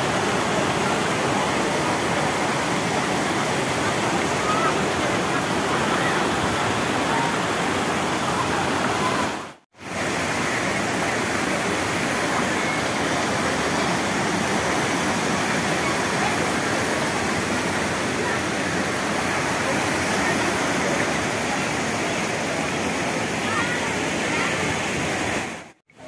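Steady rush of falling hot-spring water, broken by two brief silent gaps, about ten seconds in and just before the end.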